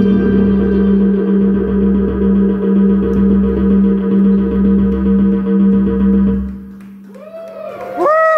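Live electronic band's final chord: a held synthesizer drone over a bass note pulsing about every second and a half. It stops about six and a half seconds in and is followed by a few rising-and-falling whoops.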